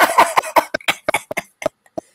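A woman's breathy laughter in quick short bursts that grow fainter and further apart, dying away near the end.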